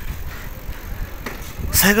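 Low, steady rumble of wind on the microphone and road noise while riding a bicycle along a paved street. A man starts speaking near the end.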